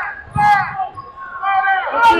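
Basketball shoes squeaking on a hardwood gym floor, in short high squeals about half a second in and again near the end, with the dull thud of a basketball being dribbled.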